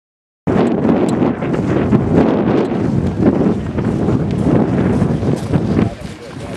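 Wind buffeting the microphone: loud, rough rumbling noise that starts abruptly about half a second in.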